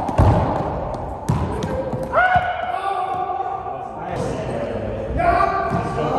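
Racquetball rally in an enclosed court: sharp smacks of the ball off racquets and walls echo in the hard-walled court, with the loudest just after the start and more over the next couple of seconds. A person's voice gives two long held calls, one about two seconds in and another near the end.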